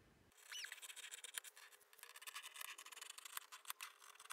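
Scissors cutting through pinned muslin and printed cotton fabric: a faint, irregular snipping and crunching made of many small clicks, starting about a third of a second in, with a brief squeak near the start.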